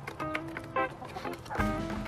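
Backyard hens clucking while they feed, over background music; a deep bass beat comes into the music about one and a half seconds in.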